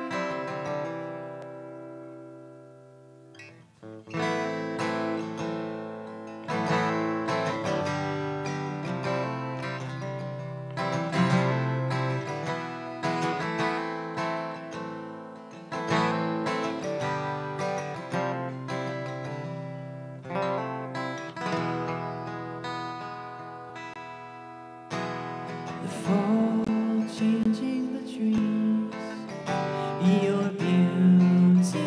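Live band playing an instrumental intro led by a strummed acoustic guitar. A first chord rings and fades, steady rhythmic strumming begins about four seconds in, and the low end fills out near the end.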